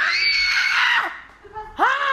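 A woman's high-pitched squeal, held for about a second, followed near the end by a short vocal exclamation that rises and falls in pitch.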